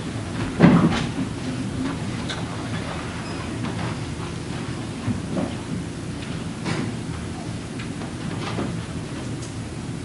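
Room noise in a lecture hall: a thump about a second in, then scattered faint knocks and rustling over a steady low hiss.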